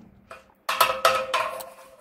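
An aluminium rod knocking against a fuel strainer inside a tractor's metal fuel tank while the strainer is pushed into the tank outlet: about six quick knocks in under a second, with a ringing tone from the tank that carries on after them.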